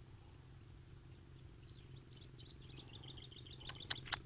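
Faint, rapid, high chirping of a small bird, starting about halfway through, over a low steady hum. A few sharp clicks come near the end.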